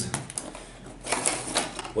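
Cardboard camera packaging being opened and handled by hand: a few quick taps and clicks, then about a second of scraping and rustling in the second half as a smaller box is lifted out.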